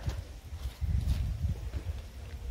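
Low, uneven rumble on the microphone of a camera carried by hand while walking, louder from about a second in.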